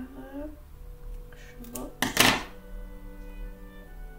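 A pair of scissors set down on the desk with a single loud clatter about two seconds in, over steady background music.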